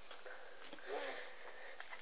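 Quiet handling of playing cards as they are picked up and gathered from a table, with a couple of small clicks and a faint breath sound near the middle.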